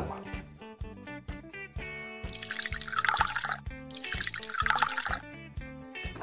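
Water poured into a plastic toy mixing bowl in two short pours, about two and four seconds in, over light background music.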